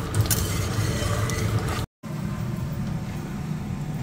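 A spatula stirs and scrapes thick curry in a steel kadai. After a brief dropout just under two seconds in, there is a steady rubbing and scraping of a stone roller grinding paste on a flat grinding stone (shil-nora).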